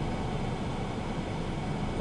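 Steady background noise: an even hiss with a low rumble underneath, unchanging throughout.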